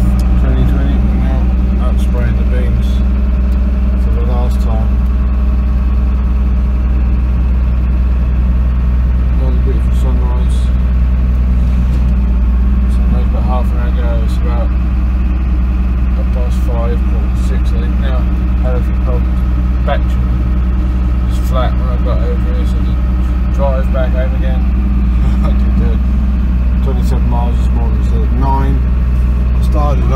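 A crop sprayer's engine heard from inside its cab, a loud steady low drone as it drives across the field. Short snatches of a faint voice come and go over it.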